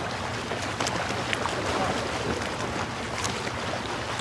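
Steady sea ambience: water washing, with wind noise and faint crackles.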